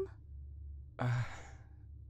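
A hesitant, breathy sighed "uh" about a second in, fading out over roughly half a second, over a faint low steady hum.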